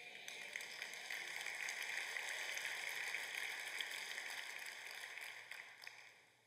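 Congregation applauding in a large auditorium, a steady patter of many hands that fades away near the end.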